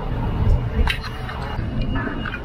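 Outdoor roadside ambience: a low, uneven rumble of traffic and wind, with a single sharp click just under a second in.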